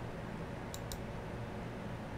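Two quick clicks of a computer mouse, close together, about three-quarters of a second in, over a low steady hum.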